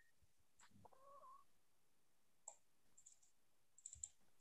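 Near silence, broken by a few faint sharp clicks of a computer mouse in the second half. About a second in there is also a brief, faint, rising high-pitched call.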